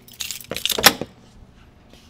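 A bunch of keys jangling with a few sharp metallic clicks, the sharpest just under a second in, as a lever-handled door is unlocked and pushed open.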